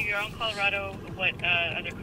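Speech only: a voice heard over a phone's speaker, thin and narrow-sounding, in several short phrases.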